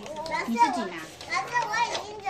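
Young children's voices chattering over each other while they play, several high voices at once.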